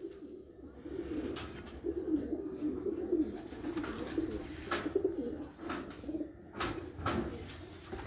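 Domestic pigeons cooing steadily, with a few clicks in the second half.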